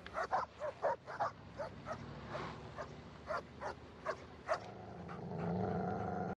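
Dogs barking repeatedly in short, sharp barks, about a dozen over four and a half seconds, before a steady pitched sound swells in near the end.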